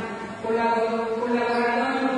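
A voice chanting in the church service in long held notes, with a brief break shortly after the start before it carries on.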